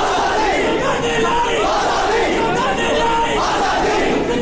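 A crowd of men shouting slogans, many raised voices overlapping without a break.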